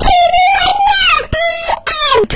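A high-pitched voice wailing: one long drawn-out cry of about a second, then two shorter cries that fall in pitch at their ends.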